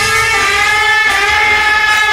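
Live rock band music in an instrumental passage: one held note with its overtones, bending slightly in pitch, over a thin backing with little bass.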